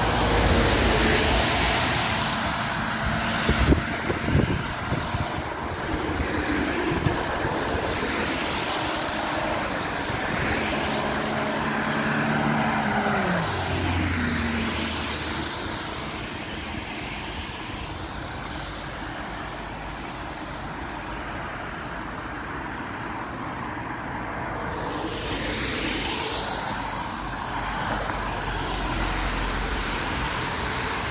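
Road traffic going past: a steady hiss of cars that swells and fades as vehicles pass, with one vehicle's engine note dropping in pitch as it goes by a little before halfway. The traffic is quieter for a while in the second half, then builds again near the end.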